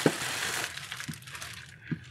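Clear plastic packaging bag crinkling and rustling as it is handled, fading out after about a second and a half, with a couple of light knocks.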